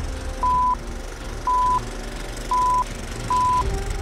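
Film-leader countdown beeps: four short, identical, high electronic beeps about a second apart, one per number of the countdown, over a steady low rumble and hiss.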